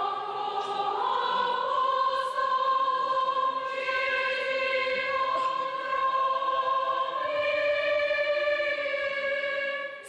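Large combined choir singing long held notes, moving to new notes about four seconds in and again near the end.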